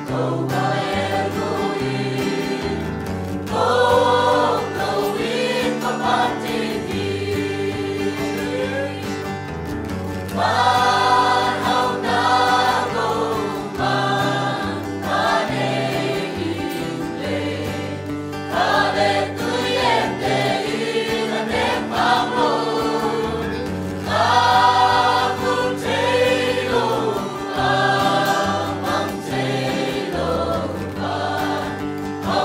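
A mixed choir of men and women singing a hymn together, in phrases that swell louder every few seconds.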